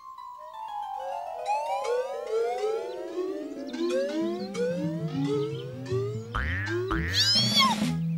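Cartoon sliding-pitch sound effect: one long tone falling slowly and steadily over several seconds, with a run of quick rising chirps over it, scoring a ball dropping from the sky. Near the end come a few springy boings.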